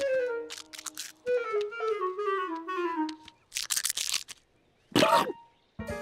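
Cartoon background music: a woodwind melody stepping downward in short phrases. After it come a few quick crunching sounds, then a brief warbling vocal squeak about five seconds in.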